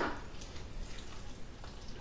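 A spoon stirring thick rice and melted cream cheese in a saucepan, faint, with a couple of light ticks.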